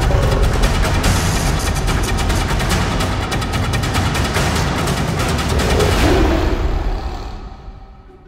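Intro theme music with rapid, dense drum hits, fading out over the last second or so.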